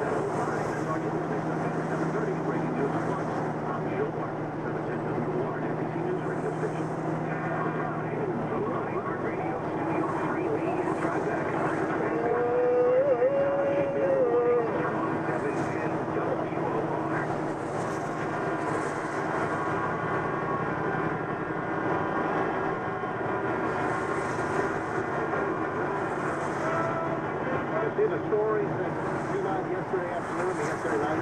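Steady engine and road noise inside a truck cab moving along a wet highway, with radio talk faintly underneath. A brief wavering whine rises above it about halfway through.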